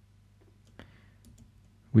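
A few faint, scattered clicks of a computer mouse, the loudest a little under a second in, over a low steady hum.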